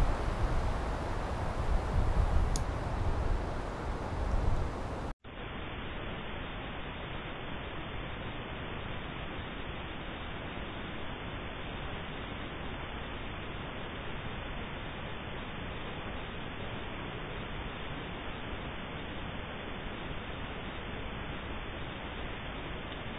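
Even, featureless background hiss from a thermal spotter's recording, with nothing else audible. It starts abruptly about five seconds in, cutting off a few seconds of uneven low rumble and faint rustle.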